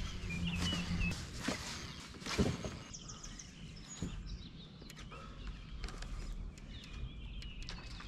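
Faint outdoor lakeside ambience with a few birds chirping briefly near the start and again near the end, and several soft knocks in between.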